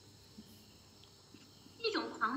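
Quiet room tone with a faint click, then a woman's voice starts speaking near the end.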